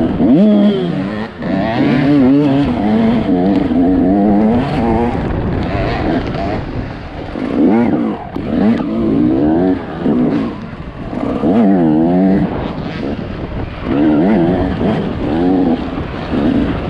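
Dirt bike engine revving up and down as the rider works the throttle along a tight woodland trail, its pitch rising and falling every second or so with brief dips as it backs off.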